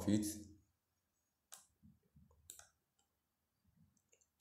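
Two computer mouse clicks, about a second apart, with a few faint ticks between them.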